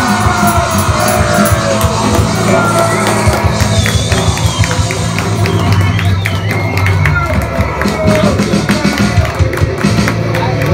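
Live rock band playing an instrumental stretch of a song: electric guitar, bass guitar and drums, loud and steady, with crowd shouts over the music.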